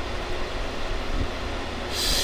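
Steady background hum and hiss of room noise, even throughout, with no distinct event standing out.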